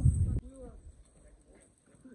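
Voices outdoors over a loud low rumble of wind on the microphone, cut off abruptly less than half a second in. Then a brief faint voice and quiet with a few small clicks.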